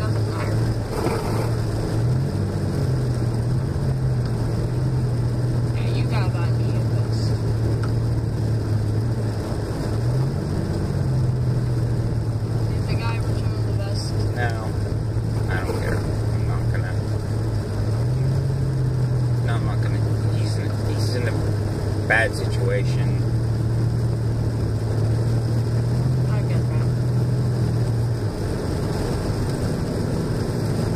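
Car engine and tyre noise heard inside the cabin while driving on a snow-covered road. The engine's steady drone steps up and down in pitch a few times.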